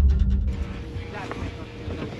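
A deep rumble that cuts off about half a second in, then the quieter steady background noise of a small car's cabin with a faint hum and a brief muffled voice.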